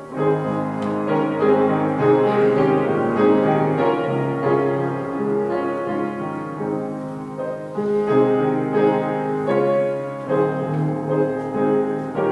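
Solo piano playing a slow piece in sustained chords that change every second or two.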